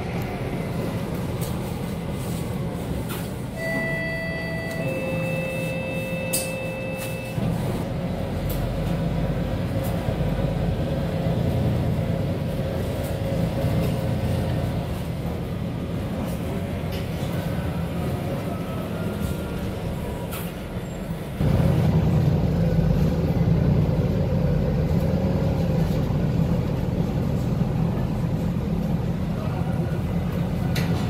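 Interior drone of a MAN A22 Euro 6 city bus under way, with low engine and road rumble. A two-note electronic chime sounds about four seconds in: a short higher note, then a longer lower one. About two-thirds of the way through, the rumble steps up and stays louder.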